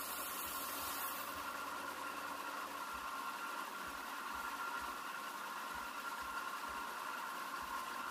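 Benchtop belt sander running steadily, a constant motor hum and belt noise, as the rough edges of a glued EVA foam sword blade are sanded smooth.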